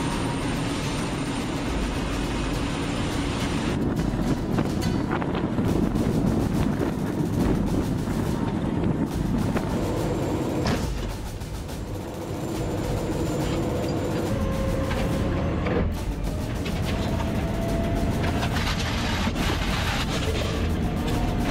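T-80BVM tank running, heard from on board: steady gas-turbine engine and track noise, broken by cuts between shots every few seconds, with a faint whine rising slowly in pitch in the second half.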